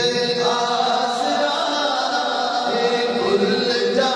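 A man singing a naat (Islamic devotional poem) into a microphone, holding long, drawn-out notes.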